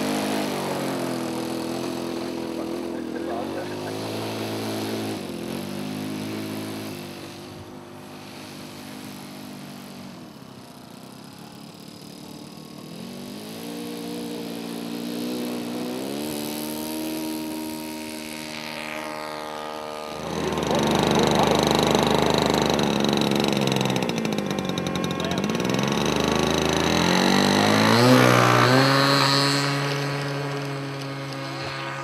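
Glow-fuel (nitro) engine of a radio-control model plane running, its pitch rising and falling with the throttle as it taxis, then opening up for the takeoff run and getting much louder about two-thirds of the way in.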